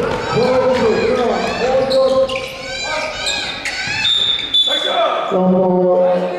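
Basketball game sounds: the ball bouncing, sneakers squeaking on the hardwood court and players' shouts, then a short referee's whistle just after four seconds in, calling a foul.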